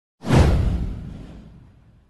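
Intro sound effect: a whoosh with a deep boom underneath. It starts sharply a fraction of a second in, sweeps downward in pitch and fades away over about a second and a half.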